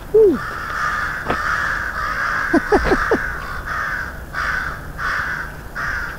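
A crow cawing in a long run of harsh calls, nearly unbroken for the first few seconds, then as separate caws about two a second.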